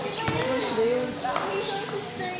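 Several people's voices calling out and talking over one another, with a couple of short knocks.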